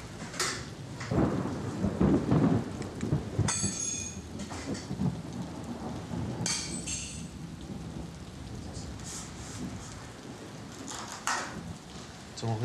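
Rain falling steadily, with a low rumble of thunder from about one to four seconds in, and a couple of brief high squeaks.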